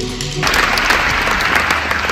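Background music that cuts off about half a second in, giving way to an audience applauding.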